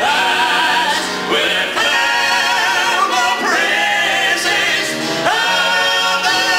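Southern gospel male quartet singing live in close harmony, holding long notes with vibrato in a few sustained phrases.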